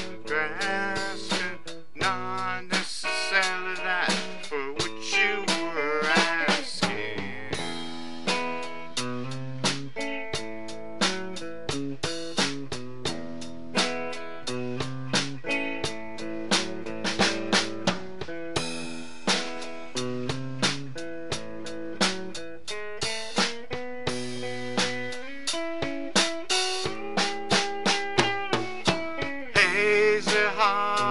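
Band playing an instrumental passage: guitar over a drum kit with a steady beat, and held notes changing about once a second.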